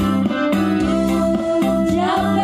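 Live band music played loud through the stage's sound system, with a long held note in the second half.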